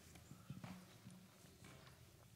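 Near silence: faint room tone with a low hum and a few soft knocks about half a second in.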